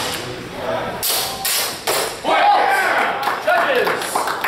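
Longsword exchange: about four sharp strikes of the swords in quick succession in the first two seconds, followed by a raised voice calling out.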